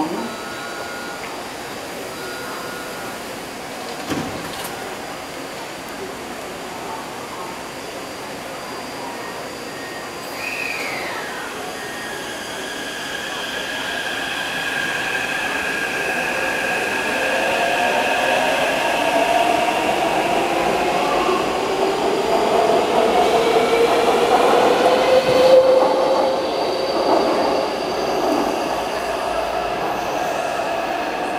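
Taipei Metro C371 train pulling out of the station. A couple of short beeps and a thump come in the first few seconds, then the traction motors' whine rises steadily in pitch over several stacked tones as the train accelerates away, growing louder until about 25 seconds in.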